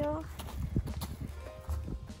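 A woman's voice trailing off at the start, then a pause in the talk filled by a low steady rumble, a few faint clicks and quiet background music.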